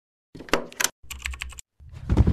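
Intro sound effect of rapid clicking, like keyboard typing, in two short runs. A louder, deeper sound begins near the end.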